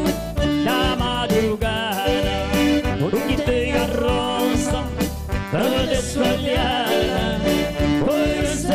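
A small band playing live: piano accordion and electronic keyboard over a steady beat, with a man singing the melody.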